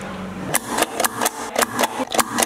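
A self-inking rubber stamp pressed down on a paper pilgrim credential again and again, a quick series of sharp clacks about four a second, starting about half a second in.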